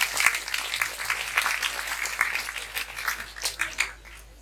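Audience clapping, a dense patter of many hands that gradually dies away toward the end.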